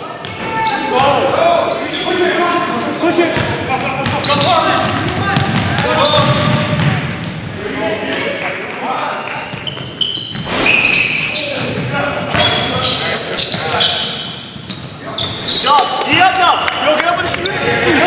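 Basketball game sounds in a gymnasium: a ball bouncing on the hardwood court amid players' unclear shouts and calls, echoing in the hall.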